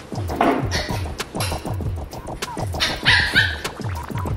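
Background music with a steady beat, and a dog's short, high-pitched bark about three seconds in.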